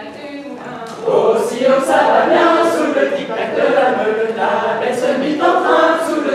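A group of voices singing an unaccompanied French dance song for a Breton round dance. The singing is softer for the first second, then the full group comes in louder.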